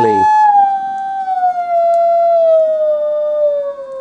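Electronic test tone from a tone generator, heard after passing through two GK IIIb speech-scrambler units that are both switched on, so the inverted pitch comes out restored to the original. The steady tone glides smoothly down in pitch as the generator's frequency dial is turned down, with a fainter second tone rising against it near the end.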